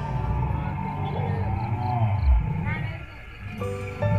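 A dinosaur roar sound effect, its pitch wavering and sliding, as the background music drops away. The music comes back near the end.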